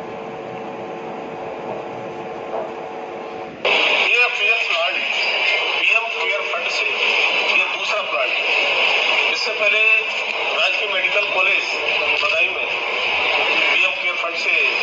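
A man speaking Hindi, played through a television's speaker and picked up off the set, so the sound is thin and tinny. For the first few seconds, before the speech cuts in suddenly, there is only a steady hum.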